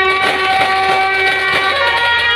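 Suona (Chinese shawms) of a procession band holding one long, loud, reedy note, stepping up to a higher note near the end.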